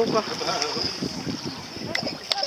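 A short laugh among faint voices, with wind on the microphone.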